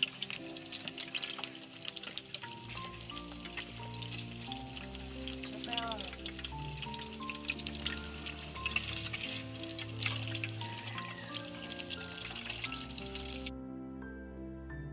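Egg frying in hot oil in a pan: a dense, crackling sizzle that cuts off suddenly near the end. Gentle background music plays throughout.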